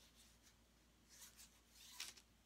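Near silence with faint rubbing and rustling: a plastic-gloved hand handling the edge of a painted canvas against parchment paper, with two soft swishes in the second half.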